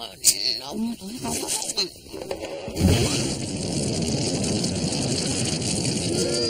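A voice making wordless sounds, with a sharp click, then from about three seconds in a sudden steady hissing rush that keeps on.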